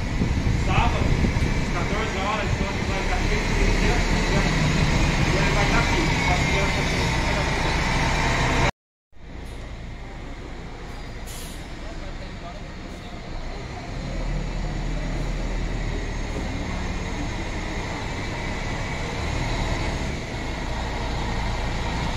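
City bus engine running with street noise and people's voices over it; the sound cuts out briefly about nine seconds in, comes back quieter, and grows louder again partway through.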